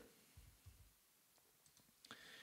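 Near silence with a few faint clicks of computer keys being typed.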